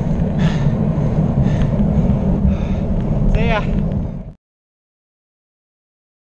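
Wind and road noise buffeting the microphone of a bicycle-mounted camera while riding, a heavy low rumble, with a brief voice about three and a half seconds in. The sound cuts off suddenly after about four seconds.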